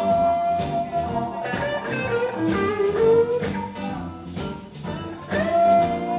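Live blues band playing: a lead electric guitar solos with long held and bent notes over electric bass, keyboard and a steady drum beat.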